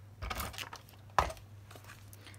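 Paper and card handling on a notebook page: light rustling, then a single sharp tap a little over a second in, over a faint steady low hum.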